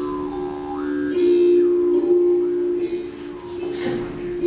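Recorded folk-song music with a plucked string instrument, played through a small computer speaker, with two notes held steadily underneath: the opening of a Finnish song for the group to sing along to.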